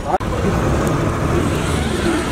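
Motorboat engine running steadily with a low rumble, faint voices over it.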